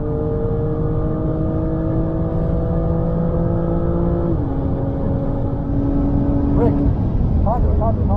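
BMW M2 engine heard from inside the cabin, accelerating hard through a gear. Its pitch climbs steadily, then drops suddenly about four seconds in at an upshift and pulls on in the next gear. A man's voice comes in near the end.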